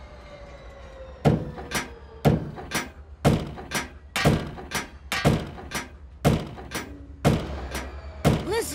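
A steady beat of heavy thunks, about two a second, with every other stroke louder, starting about a second in. It works as a rhythm for the engines to push the machine to.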